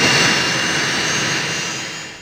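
Jet aircraft engines running: a steady rushing noise with a thin high whine, fading toward the end.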